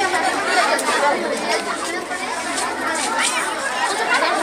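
Several voices talking over one another at once: a group's overlapping chatter.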